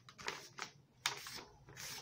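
A sheet of sulfite paper handled and folded in half, giving a series of short rustles and crinkles.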